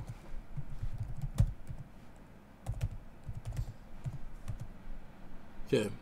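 Computer keyboard typing in several short bursts of keystrokes, with one louder key strike about a second and a half in: a password being typed at a sudo prompt in a terminal.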